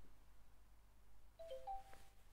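Faint phone notification chime of a few quick stepped notes near the end, a two-factor authentication prompt arriving; before it, near silence with one faint click at the start.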